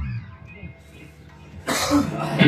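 A live rock band's held low bass note fades into a short lull in which the instruments ring faintly. Near the end comes a sudden loud noisy burst.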